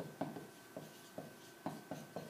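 Marker pen writing a word on a sheet of paper: a series of short, quick strokes, about six in two seconds.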